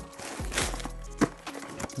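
Cardboard box and plastic packaging handled: short knocks and rustles, a sharper knock a little past halfway, as a small box is lifted out of a shipping carton. Faint background music runs underneath.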